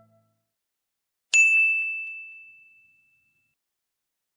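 A single high, bright ding chime sound effect, struck about a second in and ringing out as it fades over roughly two seconds.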